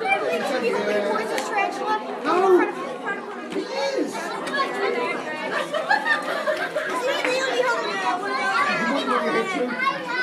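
Overlapping chatter of a group of children, many young voices talking at once with no single clear speaker.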